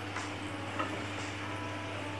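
Potato-stuffed rolls deep-frying in hot oil: a quiet, steady sizzle with a couple of faint pops, over a low steady hum.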